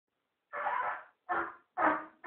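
A toddler blowing three short, airy puffs into a trumpet, mostly rushing breath. The last puff carries a faint buzzed note.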